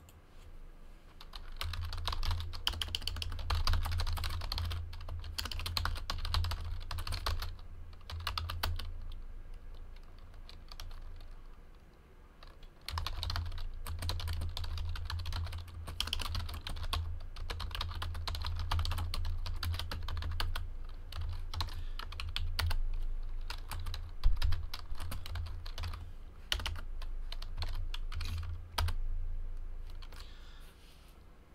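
Typing on a computer keyboard: two long runs of rapid key clicks with a short pause between them, and one sharper, louder keystroke near the end.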